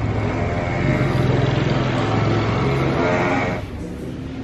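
A motor vehicle engine running with a steady low hum, cutting off suddenly near the end.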